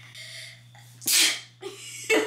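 A person sneezing once, a short, sharp burst about a second in.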